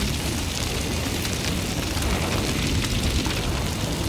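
Fire burning on a plastic Lego model: a steady rushing noise with a low rumble and scattered small crackles.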